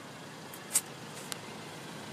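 Low steady background noise, with a short hissing rustle about three-quarters of a second in and a small click a little after one second.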